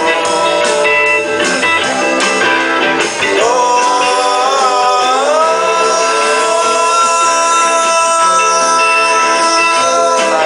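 Live rock band playing an instrumental passage: electric guitars over drums. About three and a half seconds in, a long note wavers, bends upward and is then held steadily for several seconds.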